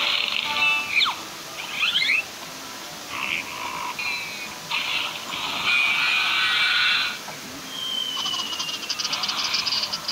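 Cartoon sound effects with music: short rasping noise bursts, a few quick whistling slides, and a fast rattling run of clicks near the end.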